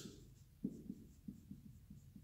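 Dry-erase marker writing on a whiteboard: a series of faint, short strokes and taps as letters are written out.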